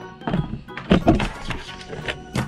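Background music with a few thunks of plastic toys knocking on a wooden tabletop, the loudest about a second in.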